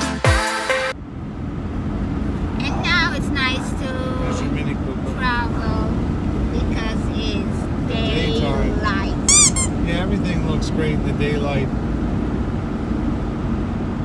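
Steady low road and engine noise inside a moving car's cabin, starting once a burst of electronic music ends with a falling sweep about a second in.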